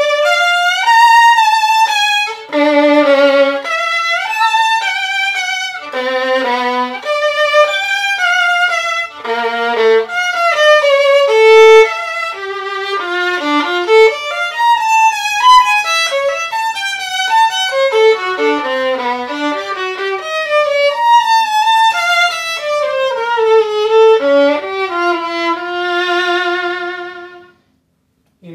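Unaccompanied violin playing a lyrical melodic passage with vibrato, ending on a long held note shortly before it stops. The violin has a Mach One shoulder rest fitted and is played as a tone test.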